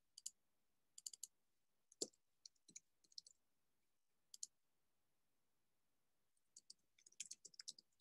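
Faint clicking of computer keys, a few scattered clicks at first, then a quick run of typing near the end.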